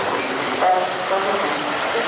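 Whitewater rushing through the channel of a river-rapids raft ride: a steady churning rush with no let-up.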